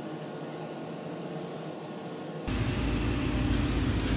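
Steady outdoor background noise, a hiss with no distinct knocks or clinks. About two and a half seconds in it turns abruptly louder and fuller, with more low rumble.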